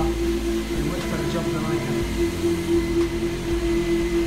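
A steady hum with a constant mid-pitched tone, like a fan or machine running, with faint voices in the background.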